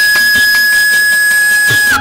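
Carnatic bamboo flute (venu) holding one long, steady high note that dips slightly in pitch near the end, with soft mridangam strokes underneath.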